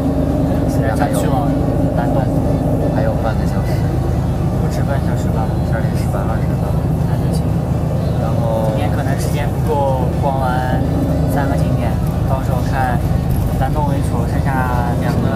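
Steady low rumble of a moving bus heard from inside the passenger cabin, with voices talking over it, most clearly in the second half.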